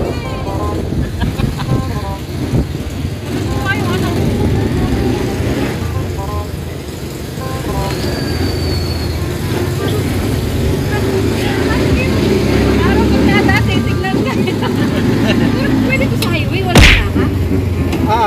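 Mini jeepney's engine running, with road noise heard from inside the open cab as it drives, and a sharp thump near the end.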